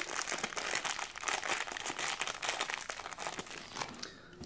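Thin clear plastic bag crinkling and crackling as hands open it and pull out the plastic guide combs, a steady run of small crackles throughout.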